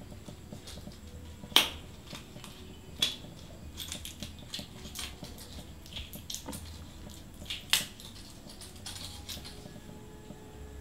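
Scattered light clicks and taps, with three sharper clicks about one and a half, three and seven and a half seconds in.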